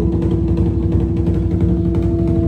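Music with fast, dense drumming under one long held note.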